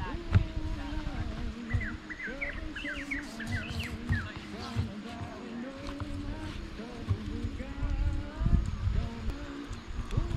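Indistinct voices in the background, a bird chirping a quick run of high notes about two to four seconds in, and irregular low thumps and rumbles on the microphone.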